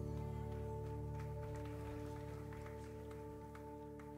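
A held keyboard chord slowly fading out at the close of a worship song, with a few faint ticks over it.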